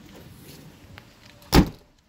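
The liftgate of a 2015 Ford Edge SUV shutting with a single loud thump about one and a half seconds in.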